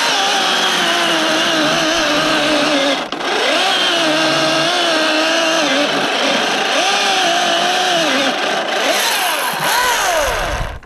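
Milwaukee M18 cordless chainsaw cutting through a log, the electric motor's whine sagging in pitch as it bogs under load and climbing again as it frees up, with a brief let-off about three seconds in. Running on a 5 Ah battery, it sounds short of power.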